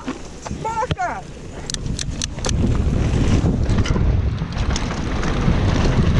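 Mountain bike setting off down a dirt singletrack: a few sharp clicks about two seconds in, then wind buffeting the camera microphone and tyre rumble that get louder from about halfway and stay loud.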